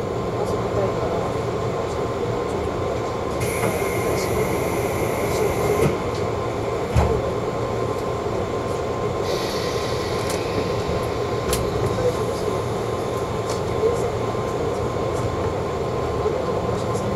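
Steady running noise inside a JR East 185 series train carriage as it starts to pull out of the station. Two stretches of high hiss occur, and there is a single thump about seven seconds in.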